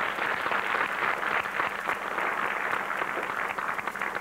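A congregation applauding: a dense, steady round of clapping from many hands.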